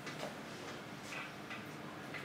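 Quiet room with a steady low hum and a few soft taps at uneven intervals.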